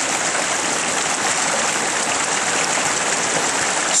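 Small forest creek running over rocks: a steady rush of water.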